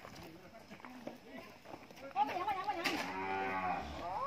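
A cow moos once, a long low call lasting nearly two seconds, starting about halfway in.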